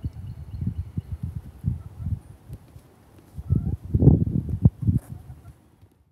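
Irregular low thumps and rumble on a handheld phone's microphone as it is moved and carried, like handling noise and footfalls, with the heaviest cluster of thumps from about three and a half to five seconds in.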